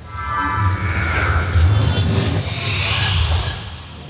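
Television broadcast graphics music: a deep, pulsing bass with a swoosh that rises in pitch over a couple of seconds, accompanying the on-screen ranking animation.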